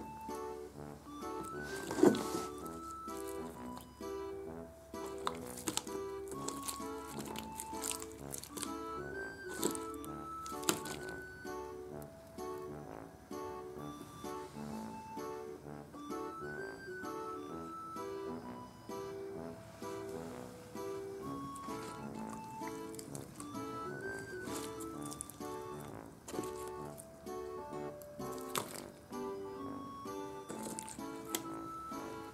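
Light background music, a plucked-string tune with a repeating melody, with a few sharp clicks over it, the loudest about two seconds in.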